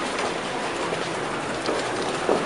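Choppy canal water lapping and splashing against moored boats and wooden pilings: a steady wash of noise with small irregular splashes.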